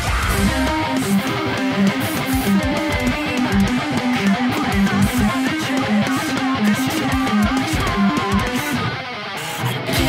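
Distorted electric guitar in drop B tuning playing a fast heavy-metal riff over the song's backing track, played on a Solar A2.6 electric guitar through an amp simulator. Just before the end the low end drops out briefly and the music thins, then comes back heavy.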